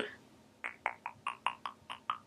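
A quick, even run of about ten short, soft mouth clicks, roughly five a second, starting about half a second in: a person clicking her tongue while she thinks.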